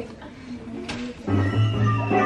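Music from an animated cartoon's soundtrack playing on a computer: soft at first, then louder with a deep bass note from about a second and a half in.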